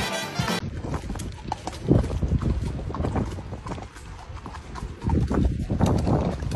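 Music cuts off about half a second in; then horses' hooves clip-clop on a wet, muddy track, a run of sharp knocks, with bursts of low rumble about two seconds in and near the end.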